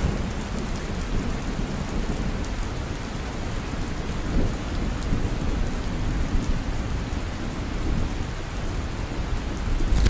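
Steady heavy rain with a low rumble underneath, like a rainstorm, starting abruptly and running evenly without a break.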